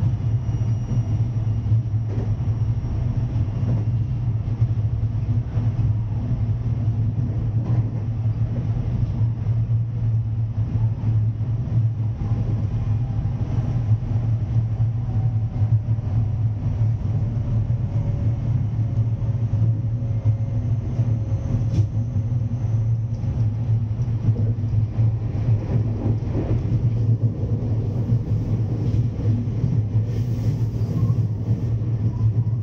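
Electric multiple-unit train running at speed, heard from just behind the driver's cab: a steady low rumble of wheels on rail and running gear, with a faint falling whine in the middle.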